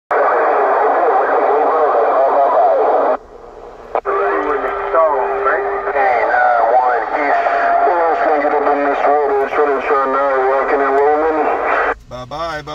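Cobra 148GTL CB radio's speaker receiving skip transmissions on channel 6 (27.025 MHz): tinny, garbled voices over static. About three seconds in the signal drops out briefly, and a click brings in a second transmission with wavering voices. That second transmission is a playback of the operator's own signal.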